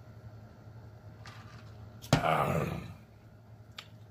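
A man drinking, then a sudden short voiced sound from him about halfway through that falls in pitch, and a small click near the end, over a low steady hum.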